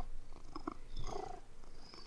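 A domestic cat purring, a low steady rumble.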